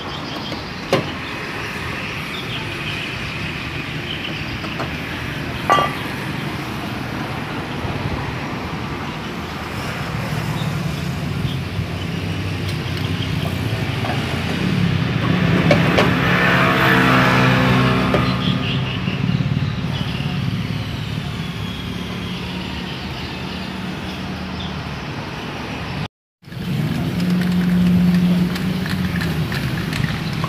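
A motor vehicle engine running nearby, growing louder for several seconds in the middle and then easing off, over steady workshop background. Two sharp metallic clinks near the start as a brake drum is handled on the rear hub.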